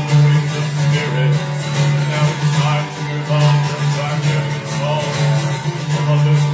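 Acoustic guitar strummed in a steady rhythm, played solo with no singing.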